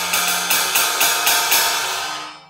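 18-inch crash cymbal played with a drumstick, about three to four strokes a second, with a small round metal plate under its bell. It sounds a bit like a flat ride, with a little rattling underneath: the plate damps the bell's overtones, leaving a drier sound. The strokes stop near the end and the cymbal rings on.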